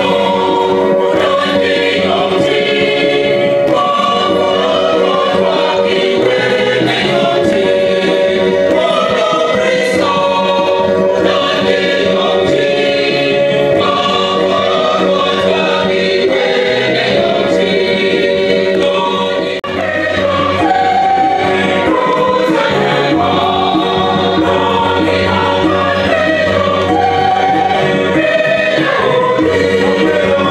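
A choir singing, many voices together, loud and steady, with a brief dip a little past the middle.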